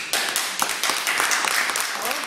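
Audience applauding, breaking out suddenly right after the last sung note fades.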